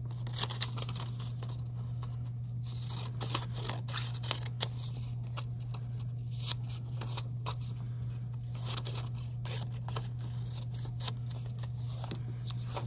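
Scissors cutting printer paper in a string of short, irregular snips as a printed label is trimmed out, over a steady low hum.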